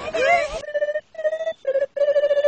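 Cartoon unicorn voices making a high wavering vocal noise, then from about half a second in a run of short trilled 'plylylylp' calls with brief gaps between them, a vocal imitation of a telephone ringing.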